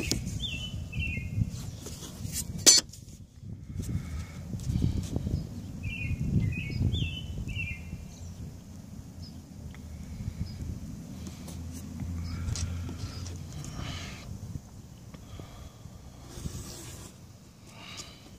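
A bird chirping outdoors in short, quick descending notes, in two brief series, one at the start and one about six seconds in, over a steady low background rumble. A single sharp click comes about three seconds in.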